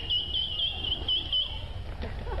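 A person whistling a high note that warbles in quick regular dips, about four a second, and stops near the end.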